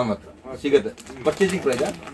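Men talking in conversation: speech only, with no other clear sound standing out.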